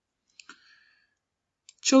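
A faint computer-mouse click about half a second in, in an otherwise near-silent pause; speech resumes near the end.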